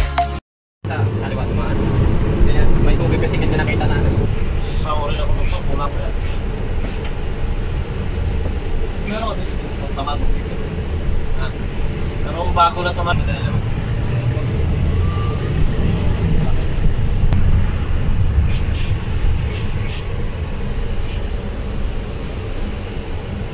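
Inside a bus on the road: the steady low rumble of the engine and road noise, with faint rattles and snatches of voices now and then.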